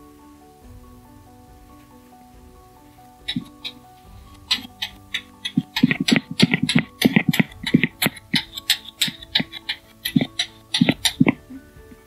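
Background music of soft held chords. From about three seconds in, the AquaGlo suction handpiece pressed over wet skin makes irregular sharp wet clicks and pops, densest in the second half, stopping just before the end.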